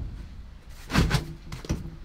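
A dull thump about a second in, then a short sharp knock.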